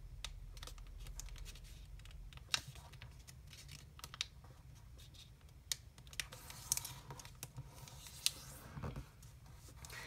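A sheet of origami paper being folded and creased by hand on a table: soft rustling and fingertip rubbing, with scattered sharp clicks as the folds are pressed down.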